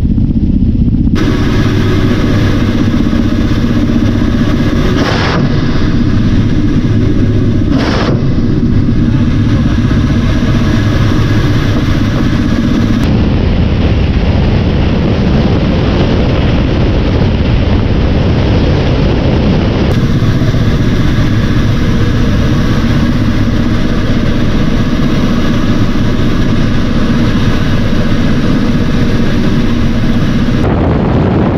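Military helicopter in flight heard from on board: loud, steady engine and rotor noise with a constant whine. Two short sharp cracks come about five and eight seconds in, and the noise changes abruptly at several cuts.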